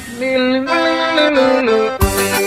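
Forró piseiro band music: the lead electric guitar plays a short line of held notes that step down in pitch while the drums drop out for a moment.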